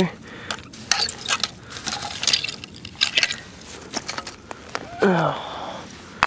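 Hand digging tool scraping and raking through soil full of old glass, with many sharp clinks and scrapes of glass and metal. A brief voiced sound about five seconds in.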